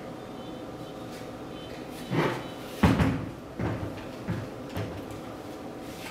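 Clunks and knocks of a petrol earth auger's steel frame being turned and set down on a table: a dull thud about two seconds in, the loudest sharp knock just under three seconds in, then a few lighter knocks.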